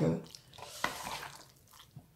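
A metal fork moving through saucy noodles in a cardboard takeaway box, giving a few small clicks and scrapes.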